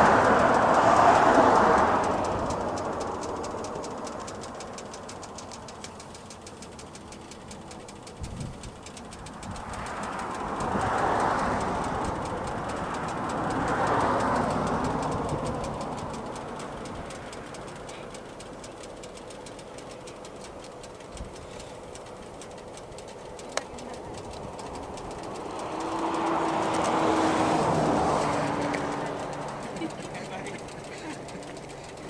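Road traffic passing: a rushing tyre-and-engine noise swells and fades in slow waves, with one vehicle's engine note dropping in pitch as it goes by near the end.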